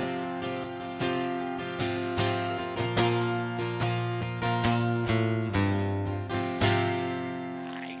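Acoustic guitar strumming the closing chords of a song, about two strums a second, with the chords changing. Near the end a final chord is struck and left to ring out, fading away.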